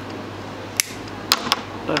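Side cutters snipping the tag end of 90 lb nylon-coated fishing wire: a sharp click a little under a second in, then two more quick clicks close together about half a second later.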